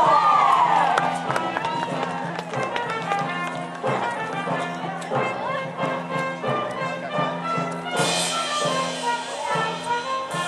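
Music with steady held notes, with loud shouting voices in the first second or so.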